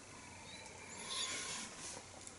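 A faint sip of beer from a glass, with a soft slurp and breath that swell slightly about a second in.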